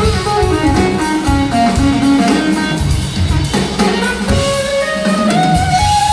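Live band playing an instrumental passage: a drum kit beat with electric guitar and keyboards. A lead melody slides downward over the first two seconds, then climbs in steps toward the end.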